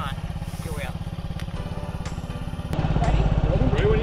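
Motor scooter engine idling with a steady, rapid low putter, louder from about three seconds in.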